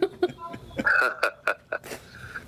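A man laughing: a quick run of short bursts, about six a second, through the second half.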